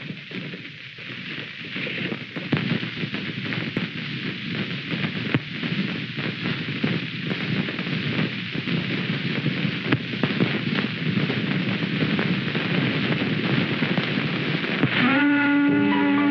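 A steady, crackling hiss full of small pops, swelling over the first couple of seconds. Music with struck, ringing notes comes in about a second before the end.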